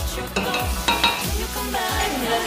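Wooden spoon stirring shrimp in a thick sauce in a stainless steel pot, with a few sharp scrapes or knocks against the pot about half a second and a second in. Background pop music with a steady beat plays throughout.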